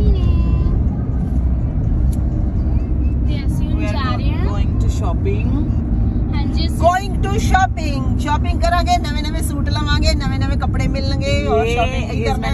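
Steady low road and engine rumble inside a moving car's cabin, with people's voices talking over it, most of the talk in the second half.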